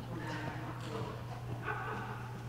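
Soft footsteps and faint knocks on a lecture-hall floor, over a steady low hum.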